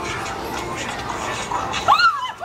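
A steady noisy background, then near the end a sudden high startled shriek that rises sharply in pitch: a woman crying out in fright at a masked figure jumping out at her.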